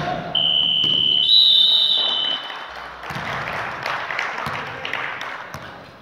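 A sharp knock as the ball hits the hoop. Then a high, steady signal tone stops play: it lasts about two seconds, and a second, higher tone overlaps it for its last second. Afterwards comes the mixed noise of players' voices and shoes in the gym.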